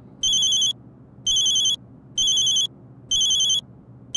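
Mobile phone ringtone: a high electronic beep sounding about once a second, four half-second beeps in a row.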